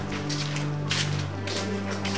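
Background film music: low sustained keyboard notes under a beat of sharp, noisy percussion hits.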